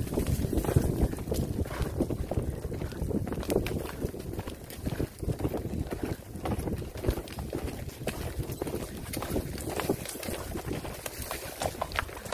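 Horse galloping on a dirt trail, heard from the saddle: an irregular run of hoofbeats and tack jostling under wind buffeting the microphone, easing off somewhat in the last couple of seconds.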